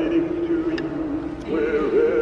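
Animatronic Santa Claus figure singing, a long held note that moves up to a higher phrase about one and a half seconds in.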